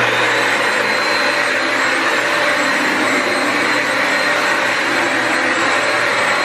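Bissell vacuum and steam mop running on a tiled floor: steady motor noise with a thin high whine.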